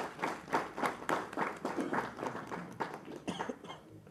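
Audience applauding, a dense run of handclaps that thins out and stops just before the end.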